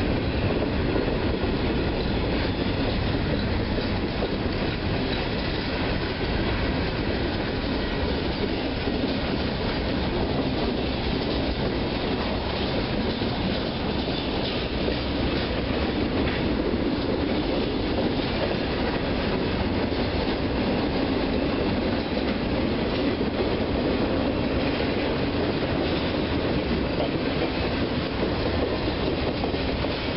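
Freight cars rolling past at steady speed: a continuous rumble of steel wheels on the rails that stays even in loudness throughout.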